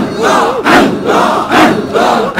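Large crowd of men chanting 'Allah' together in a rhythmic Sufi zikir, loud, at about two calls a second.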